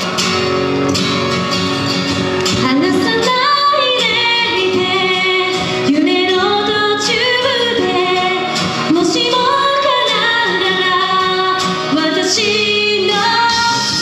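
A woman singing a pop song live into a microphone over amplified backing music.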